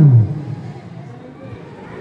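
A man's drawn-out exclamation trails off with a falling pitch in the first moment. Then comes the lower, steady background noise of the basketball court, with no single clear sound standing out.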